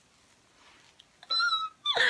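Near silence, then about a second and a quarter in a short high-pitched squeal, followed near the end by a second squeal that slides steeply down in pitch.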